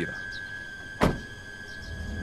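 A car door shutting once with a sharp slam about a second in.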